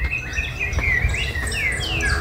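Wild birds chirping outdoors: several short whistled notes and a falling whistle near the end, over a steady low rumble.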